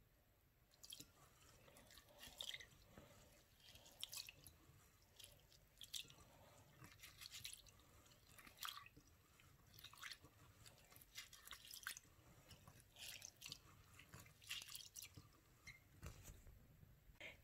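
Faint, irregular splashing and swishing of water and wet rice grains as a hand stirs and rubs rice in a bowl of rinse water.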